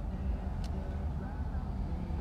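A steady low rumble, with a faint voice under it and one short click about two-thirds of a second in.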